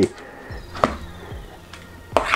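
A plastic lid being prised off a tub of crystallised raw honey: a couple of light clicks from the plastic.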